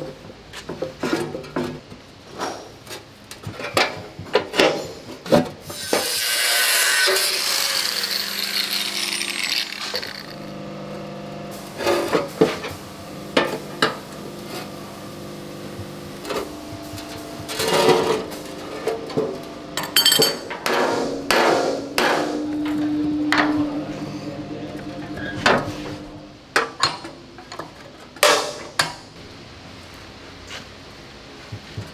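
Irregular hammer blows on the rusty sheet-steel mudguard of a Panhard EBR 90 as it is panel beaten, sharp metal strikes coming in clusters, with a few seconds of hissing noise about six seconds in.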